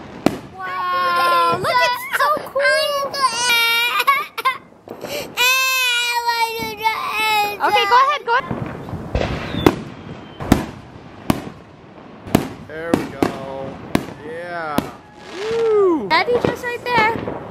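A toddler crying in long, wavering wails through the first half, with shorter whimpers after, while fireworks pop and bang throughout. The crying is the sign of a child frightened by the fireworks.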